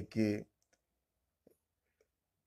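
A man speaking stops about half a second in, followed by near silence with one faint, short click around the middle.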